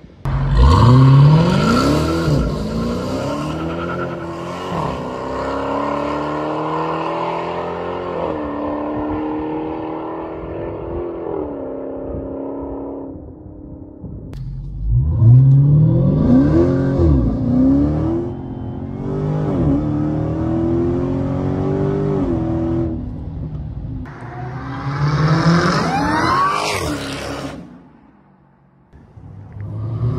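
The 2020 Dodge Challenger SRT Hellcat Widebody's supercharged 6.2-litre HEMI V8 starts with a sudden loud flare. It is revved in several sharp rising-and-falling blips, then settles to a steadier run. After a break the V8 revs and accelerates again, with a high whine rising alongside the revs near the end.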